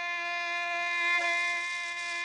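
A bowed string instrument holding one long, steady high note, with a slight waver a little past a second in.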